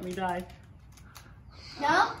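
A woman's short closed-mouth groan of disgust as she holds a piece of earthworm in her mouth, then a quieter second with a few faint clicks, and talking starts again near the end.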